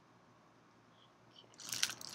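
Packaging crinkling and crackling as hands handle it, starting suddenly about three-quarters of the way in after quiet room tone.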